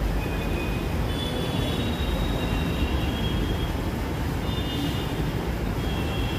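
Steady low rumbling background noise with no speech, with a few faint, thin high-pitched tones that come and go.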